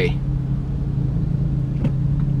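Porsche 911 Carrera (991) flat-six engine running, heard from inside the cabin as a steady low drone, with a faint tick near the end.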